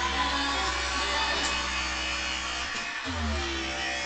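Music playing, with a gliding melody line over a steady low bass note that drops out briefly twice.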